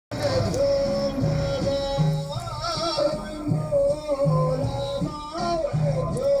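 Song with a sung vocal line of long, wavering held notes over a repeating bass, played very loud through the stacked loudspeakers on a decorated car and heard from inside a car behind it.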